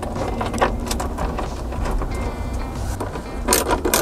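Background music with a steady low beat, with a few sharp metallic clicks as a ring lug on a battery cable is handled and set onto a battery terminal, the loudest a little before the end.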